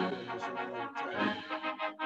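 Recorded brass band music starts abruptly, with held chords heard over a video-call audio feed.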